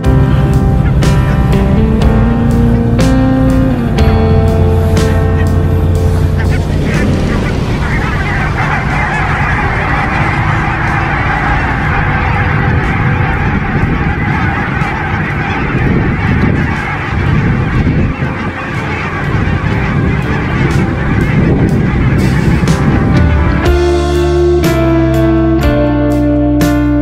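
A large flock of geese taking off and flying overhead, many birds honking at once in a dense, continuous clamour. Music plays under the first few seconds and comes back near the end.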